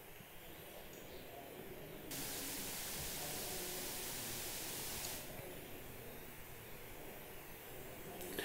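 A steady hiss over faint background noise, switching on abruptly about two seconds in and cutting off just as suddenly about three seconds later.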